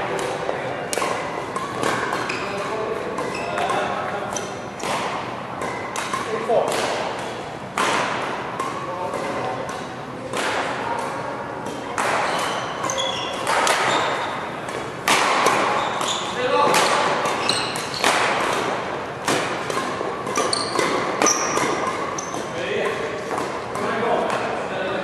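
Badminton rackets striking a shuttlecock in a long series of sharp smacks, about one a second, during a doubles rally.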